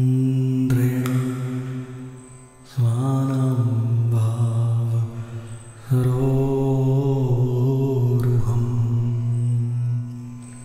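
A man's voice slowly chanting a Bengali devotional line in three long held phrases, each starting fresh and fading out over a few seconds.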